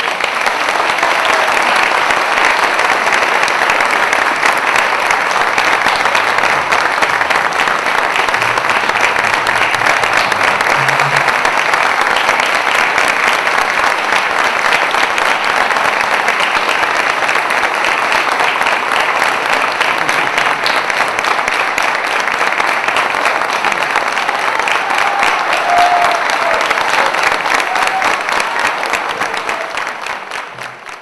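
Audience applauding steadily, thick and even throughout, dying away at the very end.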